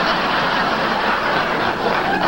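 Studio audience laughing, a steady wash of many voices.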